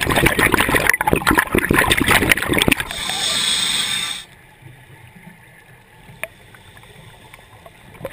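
Scuba breathing through a regulator, picked up by the underwater camera: exhaled bubbles crackle and gurgle for about three seconds, then a steady hiss of about a second as the regulator delivers the next breath, then a quieter pause.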